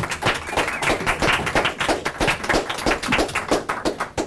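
A small group of people clapping their hands in applause, a dense, irregular patter of claps that stops near the end.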